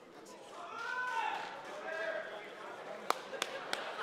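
A voice calling out across an indoor hall, its pitch gliding, followed from about three seconds in by a quick run of sharp smacks, about three a second.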